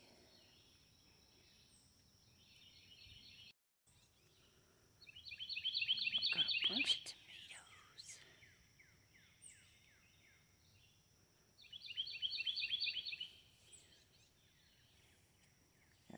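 A songbird singing in three bursts of rapid, evenly repeated high chirps, the loudest about five to seven seconds in, over a faint steady high-pitched whine.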